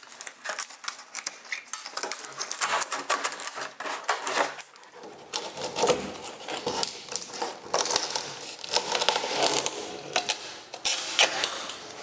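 Stiff aircraft covering fabric being cut and torn away from a wooden wing's ribs and trailing edge: a dense, irregular run of crackles and snaps.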